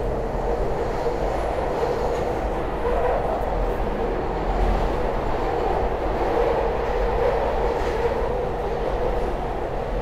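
Inside a SEPTA Market-Frankford Line subway car running along the track: a steady rumble of wheels on rail with a constant hum through it.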